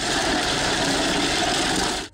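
Road roller's engine running as its steel drum rolls over heaps of glass liquor bottles, crushing them: a loud, steady mix of engine noise and crunching glass that starts and stops abruptly.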